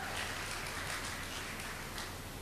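Light, scattered applause from an audience.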